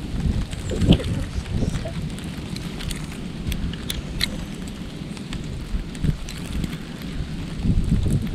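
Storm wind gusting across a GoPro's microphone held out an open window in heavy snowfall: a steady rough, rumbling rush with a sharp knock about a second in and a few small ticks.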